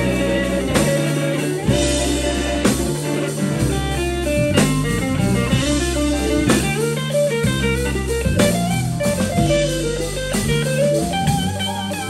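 Live blues played by electric guitar, electric bass and drum kit: the guitar plays lead lines with bent, wavering notes over a walking bass and a steady drum beat.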